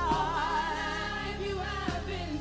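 Live gospel worship song: a woman's lead vocal, wavering in pitch, over a band with steady bass notes and drum hits.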